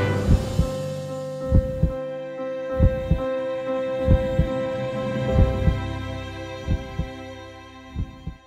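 A heartbeat sound effect, a double thump about every 1.3 seconds, over a held music chord that slowly fades out.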